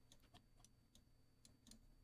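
Near silence with about ten very faint, scattered clicks.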